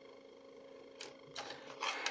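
Pieces of a broken calculator being handled on a table: a sharp click about a second in, then a short scraping rustle as the metal and plastic parts are picked up.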